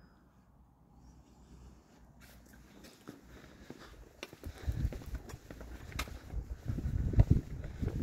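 Footsteps on a concrete driveway with wind rumbling on the microphone. Near silence at first, then low rumbling and short thumps that grow louder over the second half.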